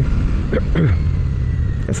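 Royal Enfield Super Meteor 650's parallel-twin engine running steadily as the motorcycle rides along a dirt road, a low rumble heard from the rider's camera.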